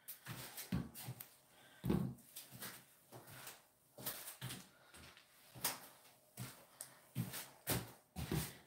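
Plastic squeeze bottles of acrylic paint being set down one by one on a table, a string of irregular light knocks and clatters.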